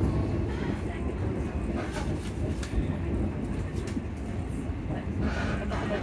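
Steady low rumble inside a passenger train carriage as the train runs along the track.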